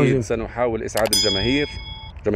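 A click followed by a single bell-like ding of about a second, starting about a second in, over a man's speech. It is the notification-bell chime of an on-screen subscribe-button animation.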